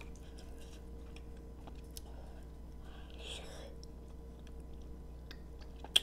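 Close-miked chewing of a soft mouthful of scallop and creamy pasta: quiet wet mouth clicks and smacks, with a sharp click near the end.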